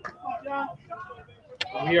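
Indistinct voices, with a single sharp click about one and a half seconds in, just before a man starts speaking.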